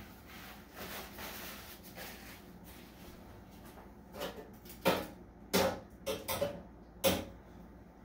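A handful of sharp knocks and clatters in a kitchen, spaced over a few seconds, after a stretch of soft rustling.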